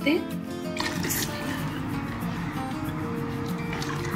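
Background music with steady tones, and from about a second in a steady hiss of soup in a cooking pot.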